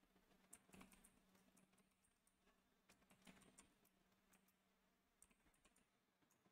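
Near silence with faint computer keyboard typing: a scatter of soft, irregular key clicks.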